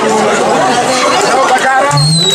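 Speech with crowd chatter: a man talking into a microphone while many other voices overlap around him.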